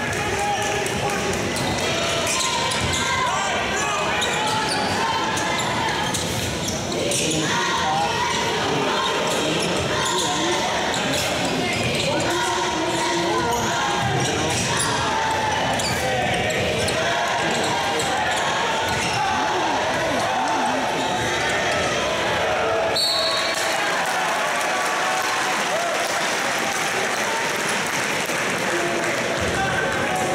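Live college basketball game sound in a large arena hall. A basketball bounces on the hardwood court against a steady background of crowd and players' voices, and a short, high referee's whistle sounds about three-quarters of the way through.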